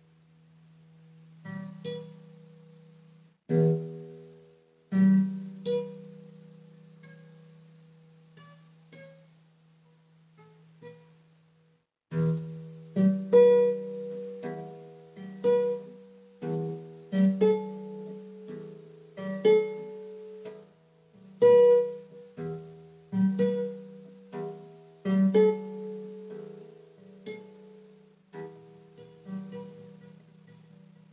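Guitar picked by hand: a few slow, ringing plucked notes with pauses between them, then from about twelve seconds in a steadier picked pattern of notes that ring into each other.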